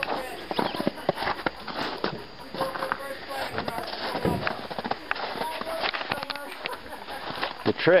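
Footsteps on crusted snow and ice, an uneven run of crunches and scuffs.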